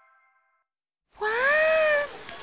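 The last ringing notes of a chiming jingle fade out, and after a short silence a high-pitched child's cartoon voice draws out one long exclamation, its pitch rising and then slowly falling.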